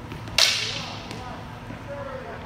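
A single stick striking once with a sharp crack about half a second in, its echo trailing off in the gym hall.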